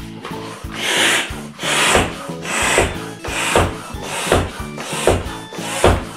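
Bicycle floor pump being stroked by hand, a rush of air on each push, about seven even strokes a little over one a second, reinflating a freshly patched inner tube.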